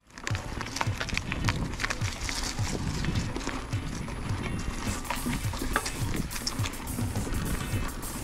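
Mountain bike rolling along a dirt singletrack: irregular rattles and knocks from the bike over the bumps, over a low rumble of tyres and wind, picked up by a handlebar-mounted action camera.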